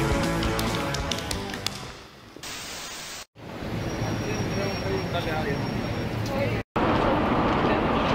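Rock music with guitar fades out over the first two seconds. After a brief cut it gives way to busy city street ambience of traffic and crowd noise, which jumps louder at a second hard cut near the end.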